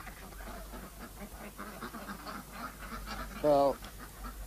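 A single loud call from domestic waterfowl near the end, short and bending in pitch, over a faint low background.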